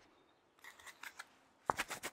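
Black gloved fingers rubbing together close to the microphone, giving a run of short dry crackles, with the loudest cluster near the end.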